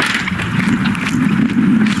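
A car engine running outside, with a few footsteps as someone walks out.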